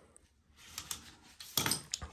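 Light metallic clinks and clatter of loose boiler parts and a small nut driver being handled and set down, loudest about a second and a half in.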